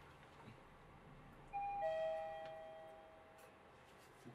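Elevator arrival chime: two tones, a higher one followed a moment later by a lower one, both ringing on and fading away over about two seconds.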